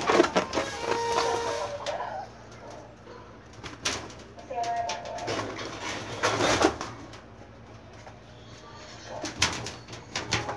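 A young girl's voice in short phrases, with several sudden bumps and knocks close to the microphone. The loudest bump comes a little past the middle.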